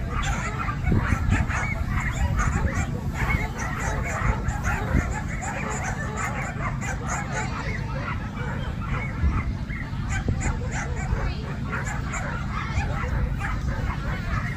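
Dogs barking repeatedly in many short, high yaps, over a steady low rumble of wind on the microphone.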